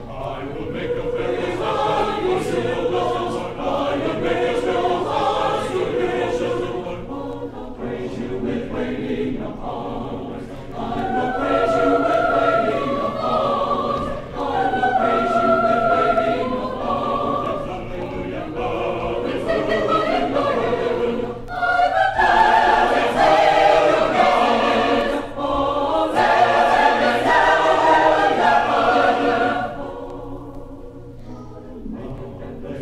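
Choir singing in a live concert recording transferred from a 1967 vinyl LP, with several voice parts moving together. It grows louder for a final phrase from about two-thirds of the way in, then falls away at the end.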